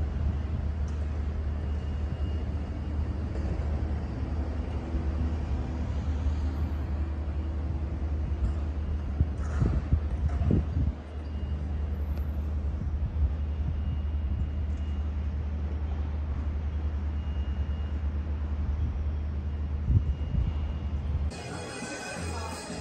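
Outdoor street ambience: a steady low rumble with a few knocks about ten seconds in.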